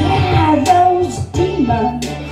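A woman singing a slow melody into a microphone over instrumental accompaniment with a steady bass, in two phrases with a short break just past halfway.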